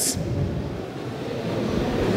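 Steady background noise of a large hall: an even wash of room noise with no clear single event.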